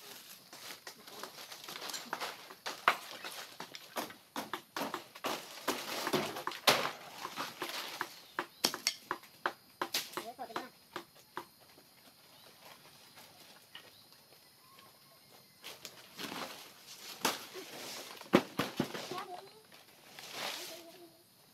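Dry palm fronds and undergrowth rustling and crackling, with many sharp snaps and knocks, as palm leaves are cut with a long bladed pole and handled. Busy for the first half, nearly still for a few seconds after the middle, then busy again near the end.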